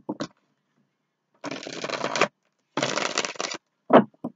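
A deck of tarot cards being shuffled by hand: two rustling bursts of shuffling, each just under a second, with a few light taps of the cards near the start and end.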